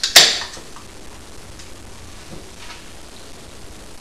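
Aluminium beer can opened by its pull tab: a short, loud hiss of escaping carbonation right at the start, then only faint handling ticks.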